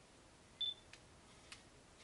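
A single short high beep about half a second in, followed by two faint clicks, over faint room noise.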